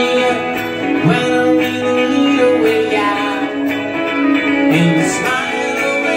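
Live band playing: electric guitars over a drum kit with cymbals, a passage between sung lines.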